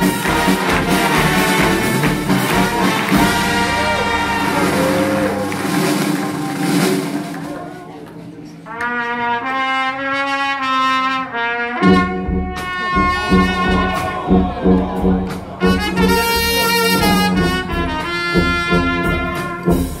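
Live brass band of trumpets, trombones, saxophone and sousaphone playing. Around 8 s the full band drops away to a short passage of a few horns playing a melody, and at about 12 s the whole band comes back in over a regular low beat.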